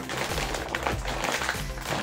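A foil potato-chip bag crinkling and crackling as it is gripped and pulled at to tear it open; the bag is tough to open. Background music plays underneath.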